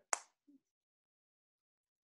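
Near silence: one brief high hiss right at the start, then dead silence until the end.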